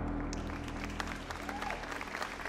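An audience applauding. The clapping starts shortly after the opening, over sustained low music notes that fade away.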